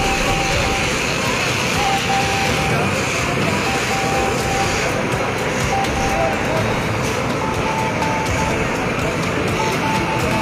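Steady, loud noise of an outdoor scene, with voices and traffic, and a single high tone that sounds on and off in short stretches, more often near the end.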